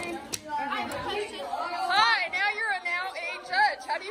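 Indistinct chatter of several girls' high voices talking over one another.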